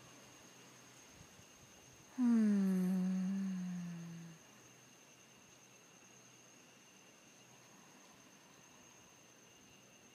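A woman's voice humming one long tone about two seconds in, sliding down in pitch and then holding for about two seconds before fading. Under it runs a faint, steady high-pitched tone.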